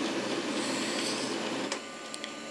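Konica Minolta PagePro 1500W laser printer running its warm-up cycle after a toner reset: a steady mechanical running noise that stops with a click near the end as warm-up finishes.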